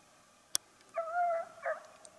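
A fox-hunting hound giving one held bay of about half a second, followed by a short yelp. A single sharp click comes just before it.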